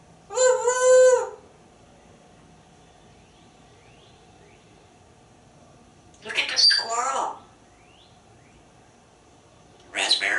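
African grey parrot vocalizing: a held, pitched call about half a second in, lasting about a second, then a garbled, speech-like mumble around six to seven seconds in. Faint, short rising chirps of small wild birds come in the pauses.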